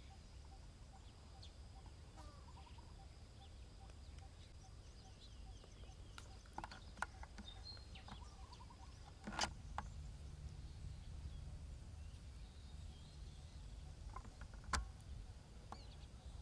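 Faint outdoor ambience: a steady low rumble and a thin high whine, with a few faint bird chirps. Two sharp clicks stand out, about nine and fifteen seconds in, the second the loudest.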